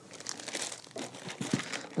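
Plastic bag crinkling as an embroidery hoop sealed inside it is handled and lifted out of foam packaging.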